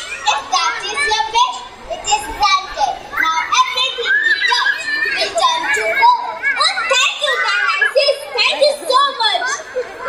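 Children's voices speaking, several at once and overlapping, picked up through stage microphones.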